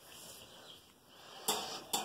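Two sharp metallic clinks about half a second apart near the end, from a wire dog crate being touched as a hand reaches into it.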